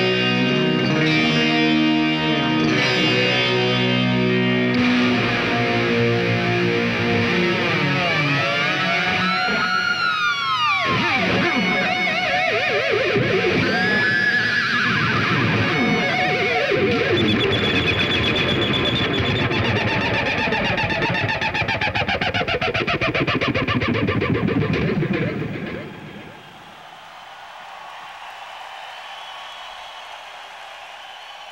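Solo electric guitar played live: held notes at first, then repeated sweeping glides up and down in pitch. About four-fifths of the way through it drops suddenly to a much quieter lingering tone.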